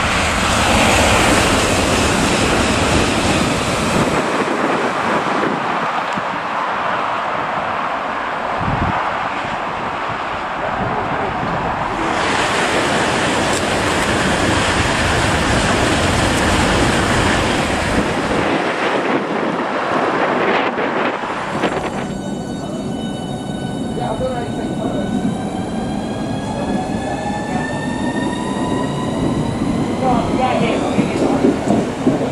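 High-speed trains rushing past at speed, including a Eurostar, with loud steady wind and rail noise. From about 22 seconds in, a Class 395 electric train pulls away, its traction motors whining in several tones that slowly rise as it accelerates.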